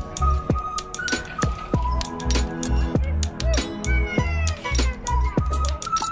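Background music with a steady bass beat and clicking percussion.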